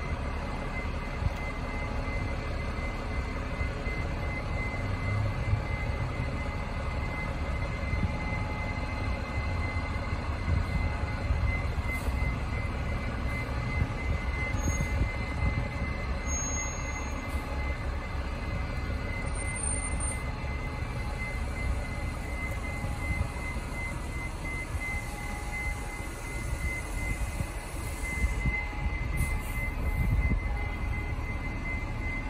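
A transit bus engine running at low speed as the bus maneuvers slowly, under a low rumble with irregular flutter that sounds like wind on the microphone. A thin, steady high-pitched tone runs throughout.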